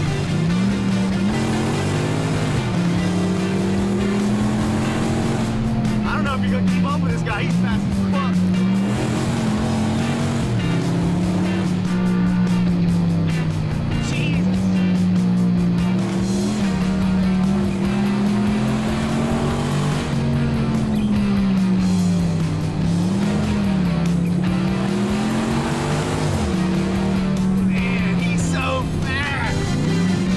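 Car engine heard from inside the cabin, pulled hard through a run of bends. Its note keeps rising and falling with the throttle and drops sharply several times as the revs fall.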